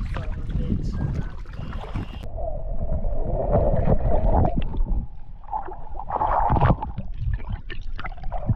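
Lake water sloshing and churning around a camera that is dipped underwater about two seconds in, turning the sound muffled and dull; the water surges louder around four and again near seven seconds.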